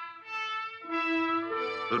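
Background music: brass instruments playing three held notes in a row, changing pitch from one to the next.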